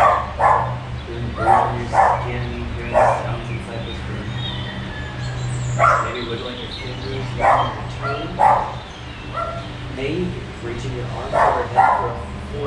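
A dog barking in short single barks, about ten in all at uneven intervals, over a steady low hum.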